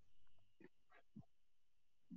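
Near silence: faint room tone with a thin steady high whine and a few brief, faint sounds around the middle.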